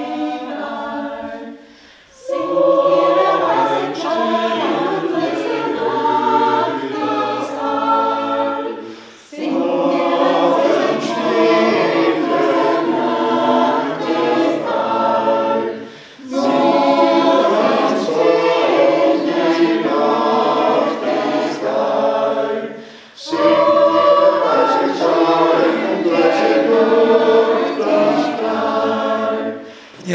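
Mixed choir of men's and women's voices singing together, in phrases about seven seconds long with a short break for breath between each.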